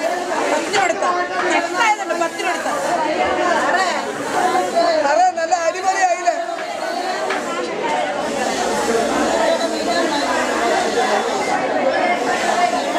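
Fish-market chatter: several vendors and shoppers talking over one another without a pause.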